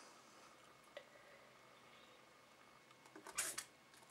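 Near silence while a Crop-A-Dile hole punch is handled and positioned on the edge of paper-covered cardboard: a faint click about a second in, then a brief rustle near the end.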